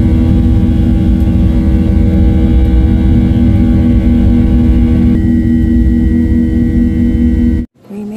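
Jet airliner cabin noise at a window seat of a Boeing 737 in flight: a loud, steady rumble of airflow with the engines' droning tones over it. The higher tones change slightly about five seconds in.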